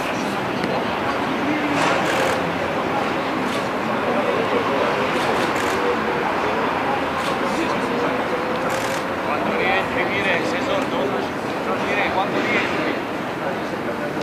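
Indistinct voices of players and coaching staff carrying across an outdoor training pitch over a steady background wash of noise. A few short, sharp knocks are scattered through it.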